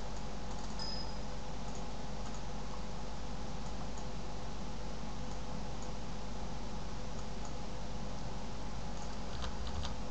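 Steady microphone hiss with a faint electrical hum, and a few scattered faint clicks from a computer mouse and keyboard.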